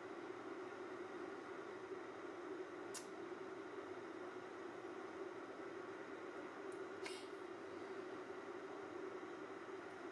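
Faint steady low hum over a light hiss, with two brief faint clicks about three and seven seconds in.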